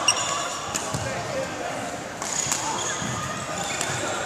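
Badminton rackets hitting shuttlecocks in a feeding drill: about four sharp clicks, the loudest right at the start. Between the hits, court shoes squeak briefly on the floor, with voices echoing in the hall behind.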